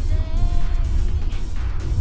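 Soft background music over the steady low rumble of road noise inside a 2023 Tesla Model Y cabin on the freeway.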